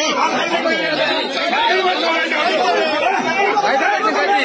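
A group of people talking over one another at once, many voices overlapping in a steady chatter.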